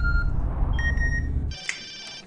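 Short electronic phone beeps, a tone near the start and a higher one about a second in, over a loud low rumble that cuts off about one and a half seconds in. A brief cluster of ringing tones follows the cut-off.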